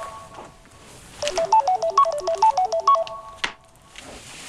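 Mobile phone ringtone: a quick electronic melody of short notes, playing twice with about a second's gap between, signalling an incoming call. It stops with a click near the end as the call is answered.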